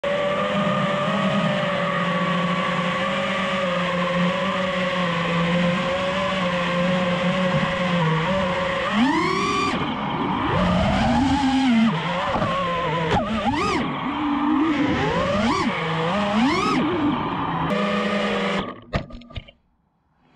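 FPV freestyle quadcopter's electric motors and propellers whining at a steady pitch, then swooping up and down in pitch for several seconds as the throttle is punched and cut through flips and rolls. The whine settles, then stutters and cuts out near the end as the drone lands.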